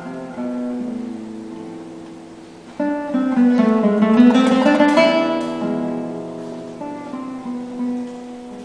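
Acoustic guitar music, with a louder strummed passage in the middle.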